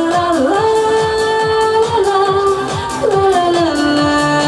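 A woman singing a pop song live over a backing track with a steady beat, amplified through PA speakers. She holds long notes, sliding down into a new pitch about half a second in and again near the end.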